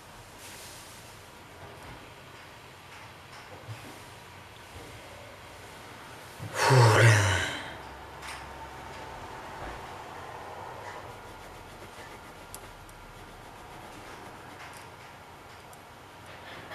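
One loud, noisy breath from a person, about a second long, some six and a half seconds in; the rest is low background.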